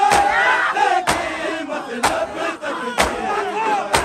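Matam: a crowd of men beating their chests in unison, one sharp slap about once a second, with many voices chanting over the beat.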